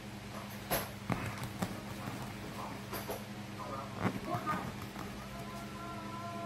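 Kitchen knife cutting bread slices into cubes on a towel over a countertop: a few sharp knocks as the blade comes down through the bread, with softer scraping between them, over a steady low hum.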